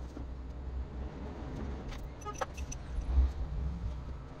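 A steady low rumble, with a brief metallic jingle of a few light clinks about two seconds in.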